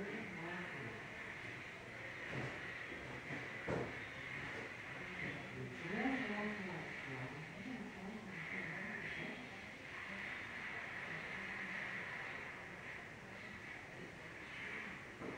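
Faint, muffled talk from an AM radio station under a steady high hiss, with two knocks in the first four seconds.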